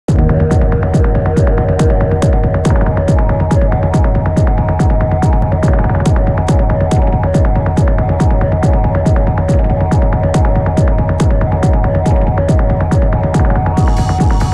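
Opening of an electronic dance track: a pulsing bass beat with a crisp tick on every beat, a little over two a second, under a held synth chord. Just before the end the sound brightens as higher synth parts come in.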